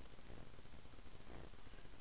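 Computer mouse clicking twice, about a second apart, each click a quick press-and-release, over a faint low room hum.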